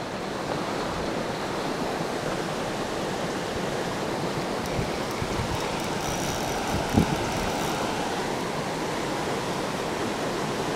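Creek water rushing steadily over a small rapid, an even wash of noise. A short thump about seven seconds in.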